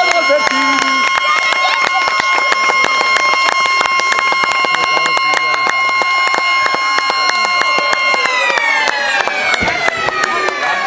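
A loud, steady horn tone made of several pitches sounding together, held for about eight seconds and then sagging slowly in pitch near the end, over constant crackling clicks.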